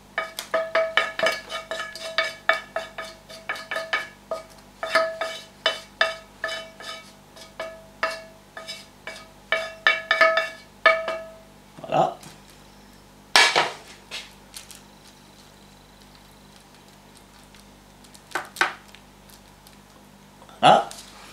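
A wooden spatula rapidly knocks and scrapes inside a metal frying pan, and the pan rings with a clear tone at each stroke as the last of the food is pushed out. This stops about 11 seconds in. A single sharp, louder knock follows a couple of seconds later, and there are a few soft clicks near the end.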